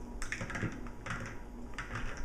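Hard plastic toys clicking and clattering as a small child handles a toy bus and little figures on a tabletop: a quick, irregular run of light clacks.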